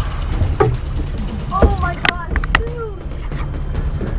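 Steady low rumble of a boat at sea, with short faint voice calls and a couple of sharp clicks about two seconds in.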